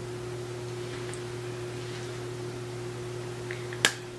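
Steady low electrical hum with a faint hiss, a background tone that carries on unchanged under her speech on either side. A single sharp click near the end.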